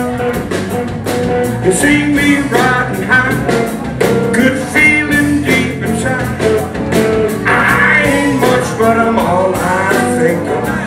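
Live electric blues-rock band: a male lead vocal sung over a semi-hollow electric guitar, electric bass and drums keeping a steady beat.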